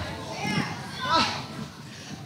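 Children's voices calling out from an audience in a hall, in a few short overlapping shouts.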